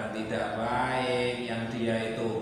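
A man's voice intoning in a drawn-out, chant-like recitation, holding pitches and sliding between them.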